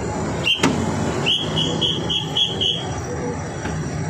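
A whistle blown in a quick run of short, high toots, about four a second, over the steady rumble of traffic and an idling engine; a sharp click comes about half a second in.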